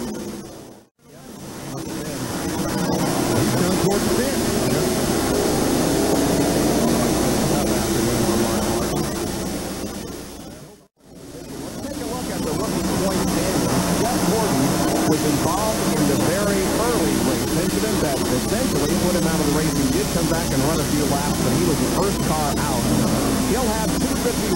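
Several NASCAR stock-car V8 engines running on track, their pitch rising and falling as the cars accelerate and pass. The sound dips out briefly twice, about a second in and again around eleven seconds.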